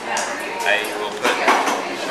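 Glass siphon coffee brewer being assembled: a few short clinks and knocks as the glass upper chamber is set into the lower globe.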